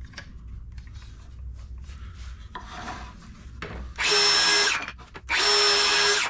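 Cordless circular saw cutting through a scrap of 2x4 in two short runs near the end, each under a second, with a steady high motor whine over the noise of the cut.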